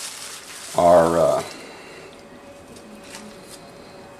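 Quiet handling noise as gloved hands pick chunks of fish trimmings out of a plastic bag and drop them into a bait mould, with a short voiced 'uh' about a second in.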